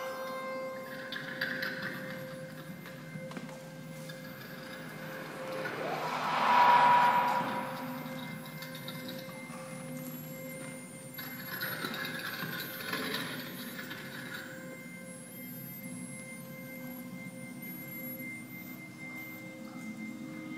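Sparse improvised experimental music from a small ensemble of violin and electronics: held steady tones underneath, a rising swell that is loudest about seven seconds in, and two stretches of hissing texture, one near the start and one in the second half.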